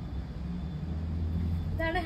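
A low, steady rumble like a running engine, a little louder in the middle; a woman's voice starts again at the very end.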